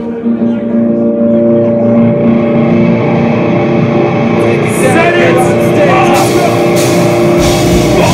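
Live metal band starting a song: electric guitar notes ring and sustain, building. Cymbal crashes come in about six seconds in, and the drums and bass kick in heavily near the end.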